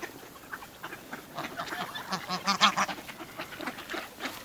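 A flock of mallard ducks quacking, with a dense burst of rapid overlapping calls from about a second and a half to three seconds in.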